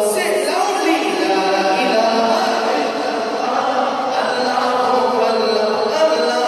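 A male reciter singing a naat, devotional praise poetry, unaccompanied into a microphone, in long held and bending notes.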